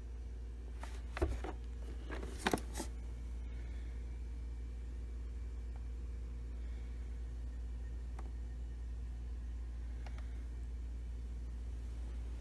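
A few light plastic clicks and knocks in the first three seconds, two of them close together near the end of that run, as the robot vacuum's dustbin and bin compartment are handled. Then quiet room tone with a steady low hum.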